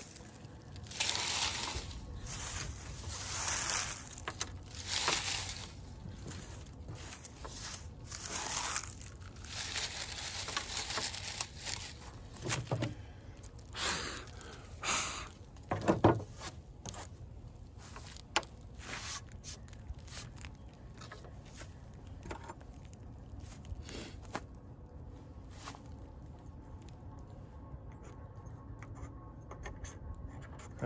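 Dry leaves rustling and crackling as they are gathered and handled, in a run of bursts over the first half. About halfway through comes a sharp knock as pieces of fatwood are handled on the mat, followed by fainter occasional handling clicks.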